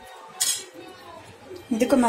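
A single sharp clink of a spoon against a dish about half a second in, with a brief ring after it.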